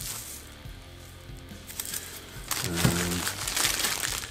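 Bubble-wrap packaging crinkling as it is handled and unwrapped, starting about two and a half seconds in, over faint background music.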